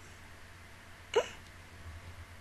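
A woman's single short, hiccup-like giggle about a second in, with a quick rise and fall in pitch.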